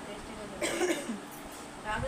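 A person coughs once, a short cough about half a second in; speech resumes near the end.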